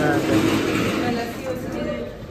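Cold store's evaporator fans running, a steady whirring noise, with a short remark from a man at the start.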